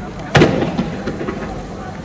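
A single loud bang about a third of a second in, followed by a short echoing tail with a few smaller cracks.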